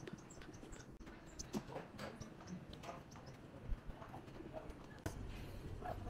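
Faint birds calling among the trees, with light, irregular footsteps on wooden decking. A low steady rumble comes in near the end.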